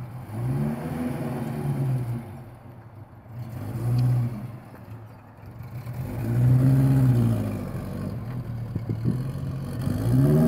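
Vintage car engine accelerating away, its pitch rising and falling in three long swells of revving.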